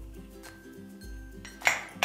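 Soft background music, with one sharp clink of kitchenware against a mixing bowl near the end as an ingredient is tipped in.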